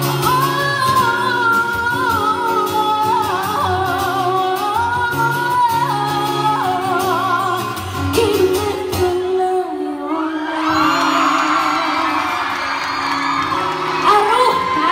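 Female pop singer singing live into a handheld microphone over backing music, amplified through a PA in a large hall.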